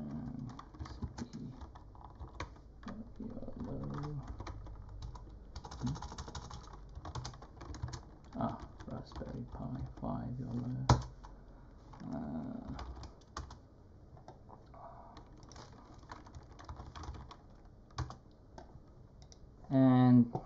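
Typing on a computer keyboard: irregular keystroke clicks throughout, with one sharper, louder click about eleven seconds in. A faint low voice murmurs now and then.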